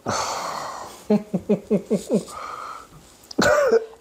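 A man laughing: a breathy, wheezing burst, then a quick run of about six falling "ha" pulses, and a loud sighing exhale near the end.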